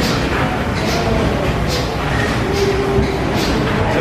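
Large double-acting stationary engine running steadily, its mechanical noise carrying a regular beat a little under once a second.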